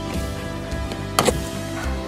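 Background music with a steady beat; a little over a second in, a sharp double click, the plastic push-pin screw cap snapping free as it is pulled down out of the lower dash trim panel.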